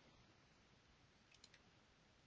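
Near silence, with two faint computer mouse clicks about a second and a half in.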